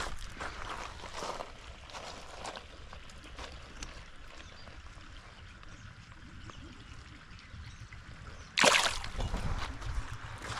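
Faint water trickling and small handling clicks at the lake's edge, then about eight and a half seconds in a short, loud splash: the bluegill going back into the shallow water.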